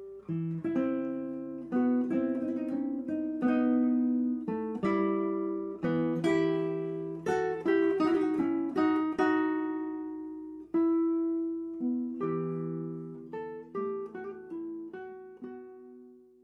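Acoustic guitar music: a run of plucked notes and chords, each ringing and dying away.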